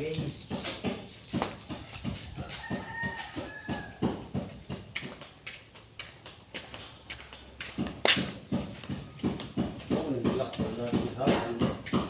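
A vehicle tyre and wheel being scrubbed by hand: a quick, irregular run of short scraping strokes throughout. A brief pitched call comes about three seconds in, and voices come in near the end.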